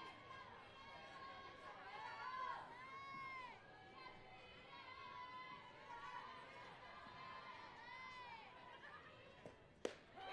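Faint voices from players and crowd calling out, then a single sharp pop near the end as the softball pitch smacks into the catcher's mitt.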